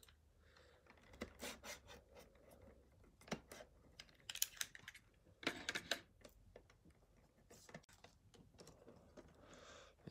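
Faint crinkling and clicking of plastic shrink wrap being slit with a box cutter and peeled off a metal trading-card tin, in short irregular clusters of crackles.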